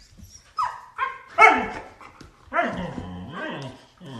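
Husky barking: a few short barks in the first second and a half, the loudest about a second and a half in, then a longer drawn-out call with wavering pitch near the end.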